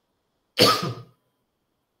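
A man coughs once, a short cough about half a second in.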